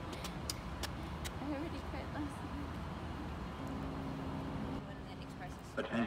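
Train platform ambience: a steady low rumble with a few sharp clicks in the first second, faint voices, and a steady pitched tone lasting about a second past the middle.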